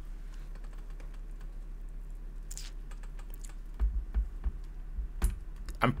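Light tapping on a computer keyboard over a steady low hum, with a few soft knocks from about four seconds in.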